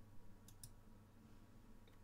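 Two quick, faint computer mouse clicks about half a second in, over a low steady hum.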